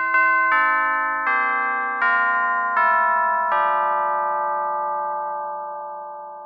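A descending run of bell chimes, about seven struck notes stepping down in pitch roughly three quarters of a second apart, each ringing on. The last note fades away slowly over the closing seconds.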